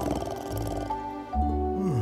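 Background music of held notes, with a cartoon animal's low growling vocal sounds over it; one drops in pitch near the end.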